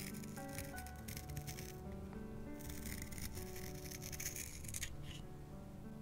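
A wooden pencil being turned in a small handheld pencil sharpener, with a dry, uneven scraping in two stretches, over soft background music.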